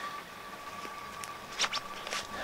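A quiet pause between spoken sentences: faint steady background hiss with a thin, steady high tone, and a short breath near the end.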